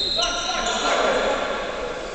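Sound of a basketball game in a sports hall: a ball bouncing on the court amid players' voices.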